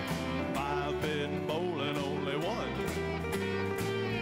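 Live country-folk band playing an instrumental break with guitars, piano, bass, drums and fiddle. A lead line bends and slides in pitch over a steady bass and drum beat.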